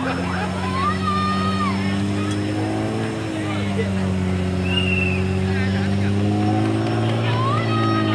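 A Nissan off-road 4x4's engine running steadily under load as it tries to climb the steep wall of a pit, its pitch rising slightly twice. Crowd voices and drawn-out shouts over it near the start and near the end.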